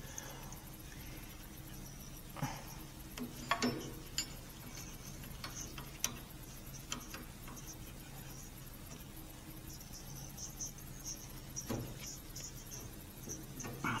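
A hand brake-line bending tool being handled on a brake line: a few scattered light metallic clicks and taps over a steady low hum, with a faint high intermittent chirping in the background.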